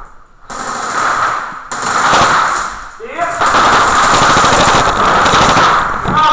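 Airsoft rifle fire on full auto, echoing in a hallway: short bursts early on, then nearly continuous rapid fire from about three seconds in. A brief shout comes just before the long burst.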